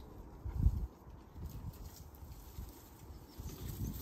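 Garlic plants being pulled up out of the soil of a raised bed: a dull low thump about half a second in, then low rumbling and faint rustling of soil and leaves.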